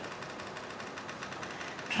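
Faint, steady room tone of a lecture hall's sound system: a low hiss with a fine, rapid buzz running through it.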